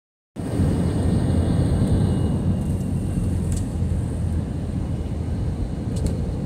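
Steady low road rumble of a car driving at highway speed, heard from inside the cabin: tyre and engine noise, cutting in a split second after a brief silence.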